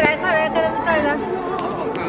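Speech: a woman calling out in Mandarin, 'kuai lai, kuai lai' ('hurry, come'), for about the first second, then outdoor background noise.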